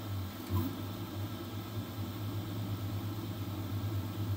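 Flsun V400 delta 3D printer printing a first layer: its stepper motors hum and whir in short, changing bursts as the print head moves, over a steady background hiss. A faint click about half a second in.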